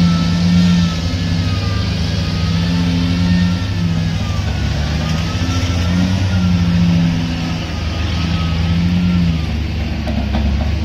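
Heavy diesel engines of a loaded ten-wheel dump truck pulling away and a Volvo crawler excavator working: a steady low drone whose pitch rises and falls in repeated surges, with a faint wavering whine above it.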